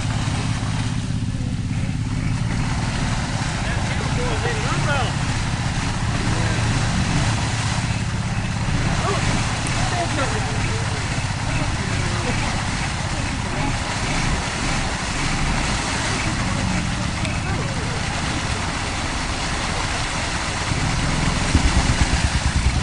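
Suzuki Twin Peaks ATV engine running steadily under load as the machine wades through deep muddy water, mixed with the sloshing and churning of water and mud thrown up by its tyres.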